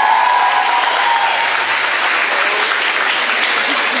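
Audience applauding with steady clapping.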